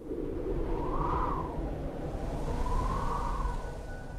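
Wind howling over a low rumble, rising and falling twice, as in a mountain-wind sound effect.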